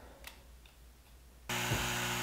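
Laser engraver's air-assist pump switching on about a second and a half in, then running with a steady hum and hiss. A faint click comes just before it.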